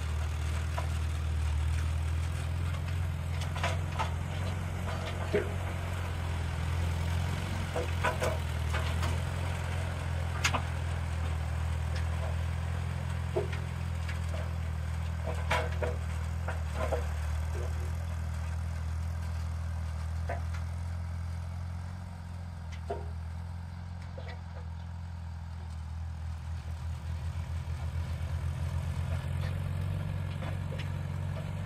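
Vintage Allis-Chalmers tractor's four-cylinder engine running steadily, with occasional sharp metallic clanks. It dips a little past the middle, then grows louder again near the end.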